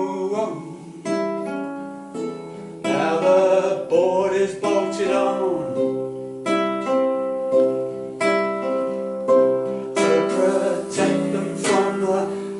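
Nylon-string classical guitar played fingerstyle: an instrumental passage of plucked chords and single notes, each new note or chord struck about every second or two and left to ring.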